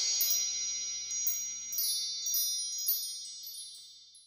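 High ringing chimes, struck several times, closing out a Christmas song over the fading tail of its last chord, and dying away near the end.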